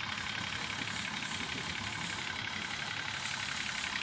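Farm tractor engine running steadily at low speed, a continuous low chugging rumble. A fast, even ticking sits above it.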